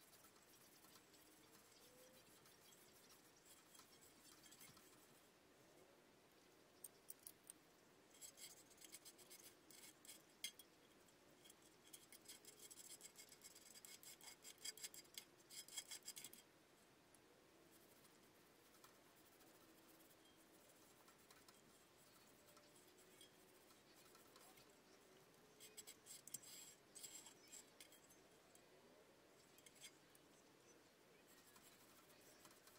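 Faint scraping and clicking as the old cone material is worked off a Bose 301 Series II woofer's metal frame by hand. The scraping comes in two spells, a long one starting about a quarter of the way in and a shorter one near the end.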